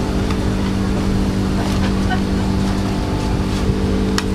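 A steady machine hum over a constant noise bed, unchanging throughout, with a few faint light clicks on top.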